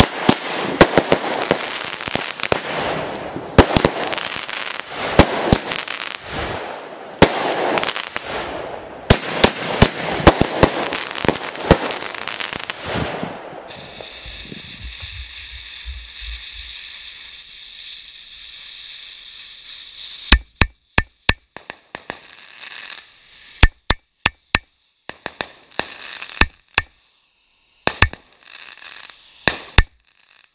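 A firework cake firing: a dense run of shots and crackling bursts for about the first half, then a quieter steady hiss of spark showers, then single sharp bangs spaced apart with short silences between them.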